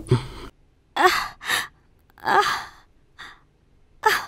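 A person gives about five short moans and sighs in a row, each rising and falling in pitch with brief silences between them. They come while the woman's lower back is being massaged.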